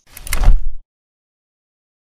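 Logo-intro sound effect: a swelling whoosh that builds into a deep bass hit and cuts off suddenly under a second in.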